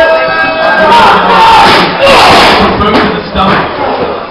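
Loud shouting and yelling from several people at once, raised voices overlapping, with a louder swell of crowd noise about two seconds in.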